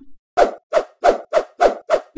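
Animated-intro sound effects: a quick, even run of short pops, about three a second.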